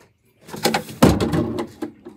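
Loud rustling and scraping with a few sharp knocks close to the microphone, starting about half a second in and loudest about a second in: a phone being handled and rubbed against the fabric of an upholstered chair.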